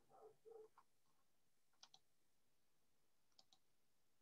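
Near silence with faint computer mouse clicks, two quick pairs, the first about two seconds in and the second about three and a half seconds in, and a faint murmur in the first second.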